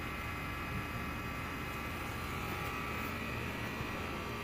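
Steady background hum and hiss with no distinct event, unchanging throughout.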